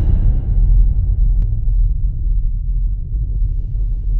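Deep, steady bass rumble from the logo-intro sound design, with a faint click about one and a half seconds in.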